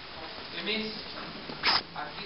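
A man lecturing in Greek, with a brief loud rasping noise, about a fifth of a second long, near the end.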